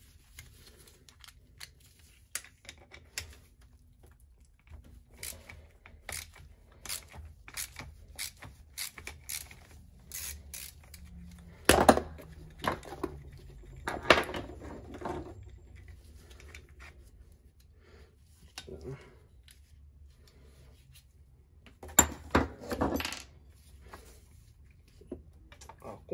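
Hand tools on metal as the kickstart lever is taken off a KTM SX 85 two-stroke engine: runs of light metallic clicks, typical of a socket ratchet undoing the lever's bolt, then a few louder metal knocks and clinks around the middle and again near the end.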